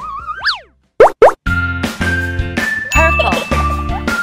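Children's background music. A wavering melody ends in a swoop up and back down, then comes a short silence and two quick rising cartoon swoops. About a second and a half in, a new upbeat track with a steady beat starts.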